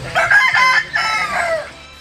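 A rooster crowing once, a loud call about a second and a half long that falls in pitch at the end.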